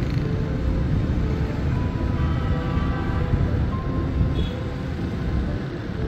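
Background music over a loud, low outdoor rumble of ambient noise; the rumble cuts off suddenly at the very end, leaving the music alone.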